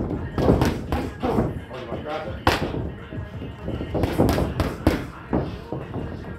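Boxing gloves landing punches on a partner's pads or gloves: a run of sharp thuds and smacks in irregular clusters of two and three, the hardest one about halfway through.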